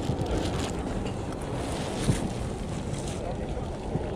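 Wind buffeting the camera's microphone: a steady low rumble, with one brief knock about two seconds in.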